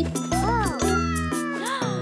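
Cartoon kitten meowing: short rising-and-falling meows, a couple just after the start and another near the end, over soft children's background music.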